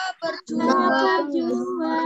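A woman and children singing a song together in Indonesian over a video call, holding long sustained notes, with two brief breaks in the sound near the start.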